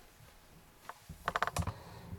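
A quick run of small clicks and taps, close together like typing, starting about a second in, with a few soft low knocks among them.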